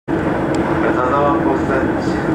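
Steady running noise of a train heard from inside the carriage, with a faint voice in the background about a second in.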